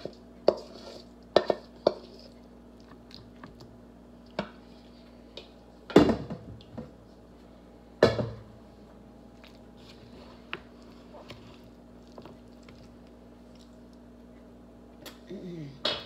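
Kitchenware clatter: a utensil clinking against a stainless steel mixing bowl as egg salad is scraped out into a plastic bowl, a few sharp clinks in the first two seconds, then two louder knocks about six and eight seconds in.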